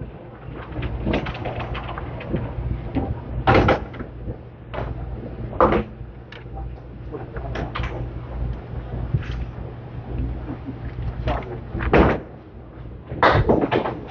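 Candlepin bowling: a small ball rumbling down a wooden lane and knocking down pins, with sharp wooden clatters about three and a half and six seconds in and another loud knock about twelve seconds in, over steady alley rumble and hum and a murmur of voices.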